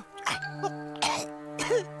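A voice-acted cartoon character coughing three times, spluttering after swallowing water, over background music holding a steady chord.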